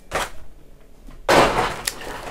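Thin clear plastic box insert tray being handled and lifted away. There is a short rustle, then a louder plastic rustle a little over a second in, ending with a sharp click.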